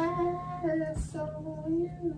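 A person singing wordlessly in a high voice, a tune of held, gliding notes with a short break and a light knock about a second in.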